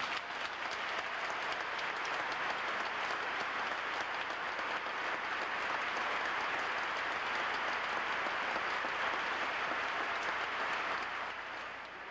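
A large audience applauding steadily, a dense patter of clapping that eases off near the end.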